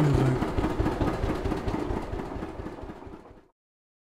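Car engine running as the car pulls away, fading out over about three seconds before it cuts off.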